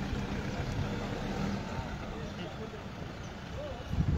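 A motor vehicle's engine running steadily, a low hum, with faint voices in the background.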